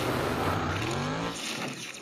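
Dirt-track race car engine revving, its pitch rising over the first second or so, then the sound thins out and fades away.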